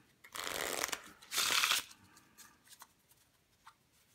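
A deck of paper playing cards being riffle-shuffled: two bursts of riffling about a second apart, the second louder, followed by a few light ticks as the cards are handled.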